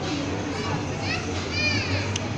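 Children's voices; a young child gives a high squeal that rises and falls in the second half.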